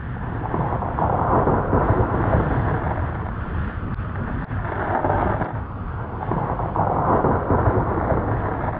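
Thunderstorm sound effect: a continuous rolling rumble of thunder with a rain-like hiss, swelling louder about a second in and again near the middle and the end.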